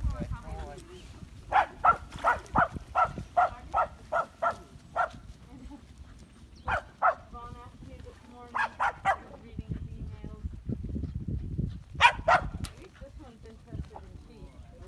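A dog barking in runs: a string of about nine barks at roughly two a second, then shorter groups of two and three barks.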